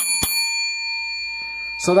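A bell-like metallic ding: a sharp strike, a second click just after, then a clear ring of several tones that holds and fades only slowly.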